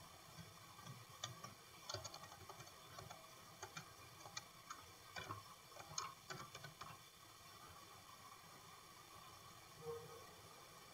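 Faint, irregular computer keyboard keystrokes and mouse clicks, stopping about seven seconds in.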